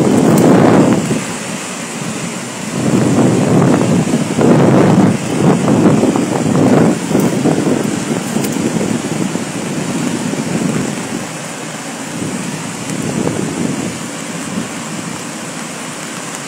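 Waterfall in full spate, swollen by heavy rain, running as a steady roar of falling water and spray, with gusts of wind buffeting the microphone that make it surge loudly through the first half and settle to a steadier wash later.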